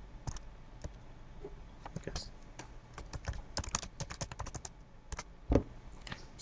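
Computer keyboard being typed on: scattered key clicks, with a quick run of keystrokes about halfway through and a duller, heavier key press near the end.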